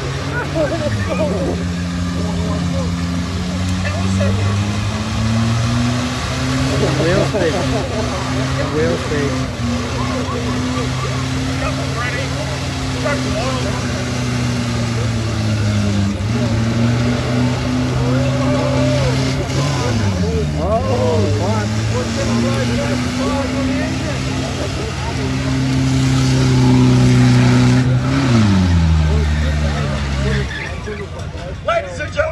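Rodeo ute's engine held at high revs in a burnout on the pad, wheels spinning in clouds of tyre smoke. The revs dip briefly twice around the middle and fall away near the end.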